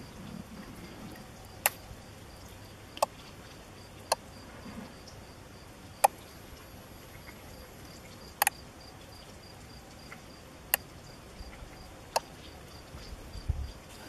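Relays in a homemade irrigation controller clicking as zones switch, seven sharp single clicks spaced irregularly a second or two apart. Under them, faint insect chirping pulses evenly.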